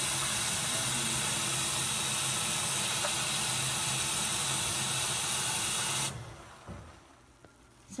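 Bathroom sink faucet running steadily into a filling basin, stopping abruptly about six seconds in.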